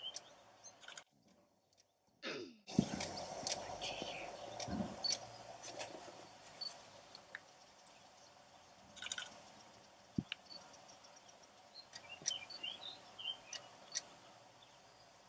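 Quiet outdoor ambience with small birds chirping in short bursts, scattered sharp clicks, and a steady low hum for a few seconds after a brief gap about two seconds in.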